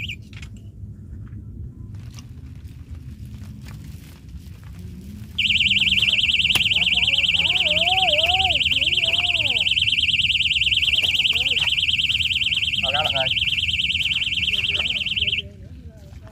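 Electronic fishing bite alarm sounding a loud, fast-warbling buzzer tone, signalling a fish taking the line. It starts suddenly about five seconds in, runs for about ten seconds and cuts off shortly before the end. Brief voices call out under it.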